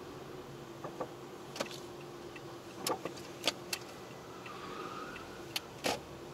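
Inside a car moving slowly: a steady low hum in the cabin, broken by a string of about eight sharp clicks and rattles, the loudest near the end.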